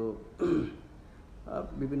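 A man's voice: a short throat clearing about half a second in, between spoken words, with speech resuming near the end.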